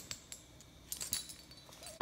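Faint scattered clicks and knocks of the recording phone being handled as a hand grabs it.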